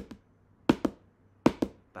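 Wooden drumsticks playing bounced double strokes: two quick pairs of taps, the two taps in each pair a split second apart, the second a rebound off the first.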